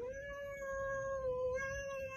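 Calico cat giving one long, drawn-out meow held at a steady pitch for over two seconds.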